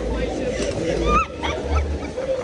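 Fairground ride in motion, heard from a rider's seat: a low wind-and-ride rumble on the phone microphone, with riders' voices and a few short high squeals about a second in.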